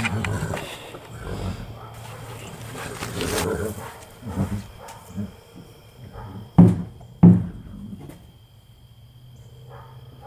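Clatter and scraping of horse feed being handled at a wooden stall feed box, with two loud, sharp knocks a little past the middle, less than a second apart.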